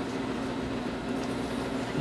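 Steady room noise: an even background hum with no distinct knocks or clicks.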